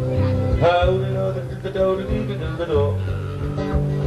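Acoustic guitar strummed in a steady rhythm, opening a live folk song, with a second pitched line sliding up into held notes twice over it.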